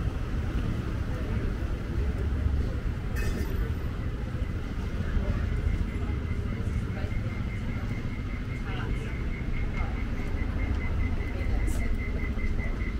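Street ambience at night: a steady low rumble of road traffic with faint voices. About four seconds in, a high electronic beep starts repeating at an even rate, about four times a second, and carries on.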